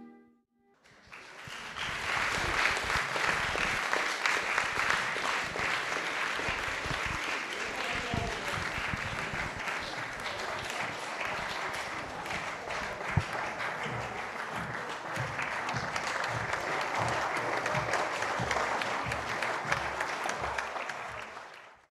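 Audience applauding: one long, steady round of clapping that starts about a second in.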